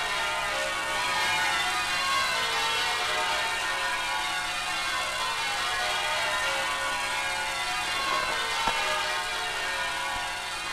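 Bells ringing, with many overlapping tones at different pitches sounding and fading throughout.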